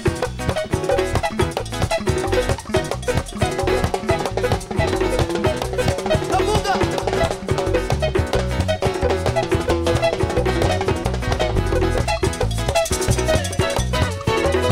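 Live Latin band playing an instrumental passage with no singing: strummed acoustic guitars and electric bass over a busy, steady percussion groove of hand drum, timbales and cowbell.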